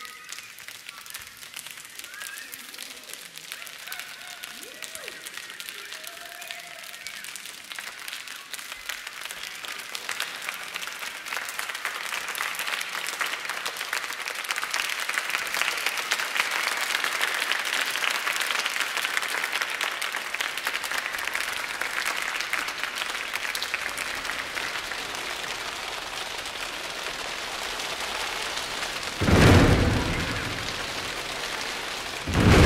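A large choir making a rainstorm with their hands: a dense patter of snapping and clapping swells to a peak about halfway through and then thins again. Near the end comes a single loud low boom like thunder.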